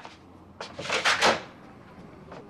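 A wooden door being handled: a short click at the start, then a louder clatter lasting under a second about a second in.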